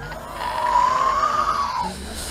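A drawn-out, high-pitched wailing cry of about a second and a half. It rises a little in pitch and then drops away.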